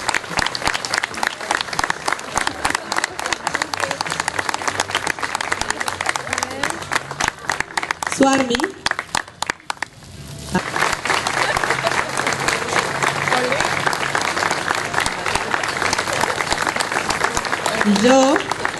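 Crowd applauding, many hands clapping. The clapping fades for about a second, roughly nine seconds in, then picks up again as a fuller, steady round of applause.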